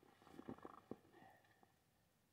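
Near silence with faint handling noises: a short run of small clicks and rustles in the first second or so as the chainsaw is worked on by hand, its engine not running.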